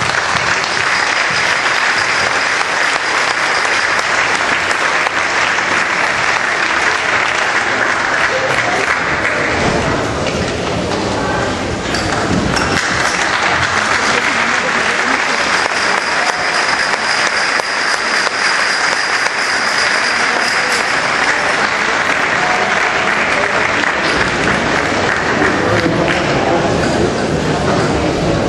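Audience applauding, a long round of clapping that thins briefly about ten seconds in and then picks up again.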